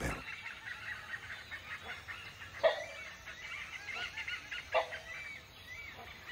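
Rainforest birds chirping continuously in many small high notes. A rufous-necked hornbill gives two short, louder calls that drop in pitch: the first, about two and a half seconds in, is the loudest sound here, and the second comes near five seconds.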